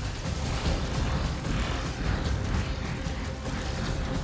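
Film sound-effects mix: mechanical clattering and creaking over a steady low rumble, with orchestral-electronic score underneath.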